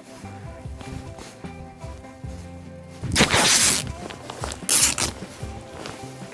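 Background music with two loud rustling bursts, the first just under a second long about three seconds in, the second shorter about four and a half seconds in: soft wrapping material being wrapped around a rifle cartridge by hand.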